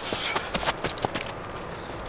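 Football boots running on a natural grass pitch: a quick series of short footfalls, close together in the first second and sparser after.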